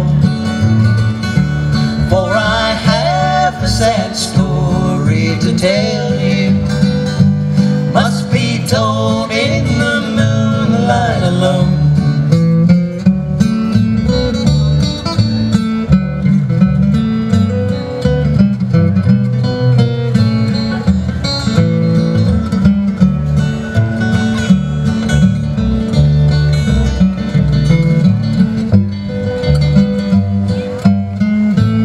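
Acoustic guitar and upright bass playing a country/bluegrass instrumental break, the bass plucking steady low notes underneath. A wavering, gliding melody line rides on top for about the first twelve seconds, then the plucked guitar carries on alone over the bass.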